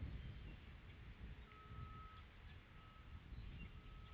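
Faint outdoor ambience at a tree-top nest camera: a low wind rumble on the microphone fades away, then a faint steady high beep repeats about once a second, with a few brief chirps.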